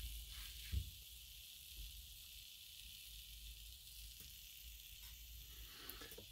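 Quiet room tone: a faint steady hiss with a low hum underneath, and one soft click just under a second in.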